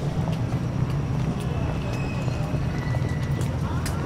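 Outdoor ambience: a steady low rumble with a few faint scattered clicks and distant voices.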